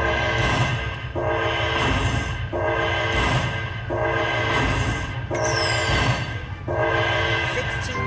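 Dragon Link video slot machine playing its electronic bonus-win tune: a held chord repeated about once a second while the win meter counts up the collected fireball credits. A falling whistle-like tone comes just past halfway, over a steady low casino hum.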